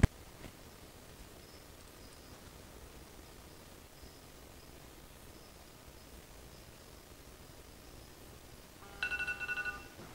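Phone countdown timer alarm going off near the end, a rapidly pulsing electronic tone: the soak time is up. Before it, quiet room tone with a single sharp click at the very start.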